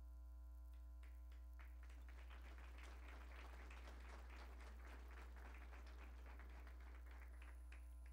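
Faint applause, starting about a second in and thinning out near the end, over a steady low electrical hum.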